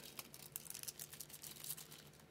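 Faint crinkling and clicking of a nail stamping plate's plastic packaging being handled, a quick run of small crackles.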